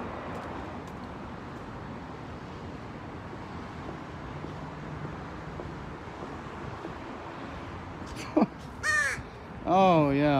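Steady low city background, then a pet crow calling near the end: a short call, another a moment later, and a louder, harsher caw at the very end.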